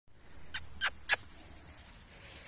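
Puppies giving three short, high-pitched squeaky yelps as they jump and climb at a person's legs, the third the loudest.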